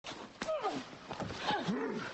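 Yelling and growling voices of a staged fight, their pitch sliding steeply down and back up, with one sharp hit less than half a second in.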